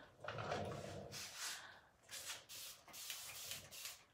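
Paintbrush brushing chalk paint onto a wooden buffet: a series of short, soft, hissy strokes, about two a second, applying a second coat.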